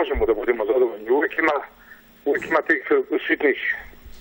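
A man speaking in Serbian, his voice thin and narrow as if heard over a telephone line.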